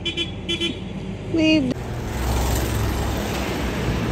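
Two short toots of a vehicle horn, then, after a sudden change a little under two seconds in, a steady rumble of passing road traffic.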